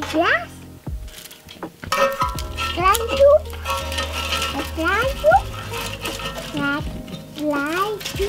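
Background music with a toddler's short, high, rising vocal sounds, heard several times. A few light knocks come from fuel being loaded into a small metal wood stove.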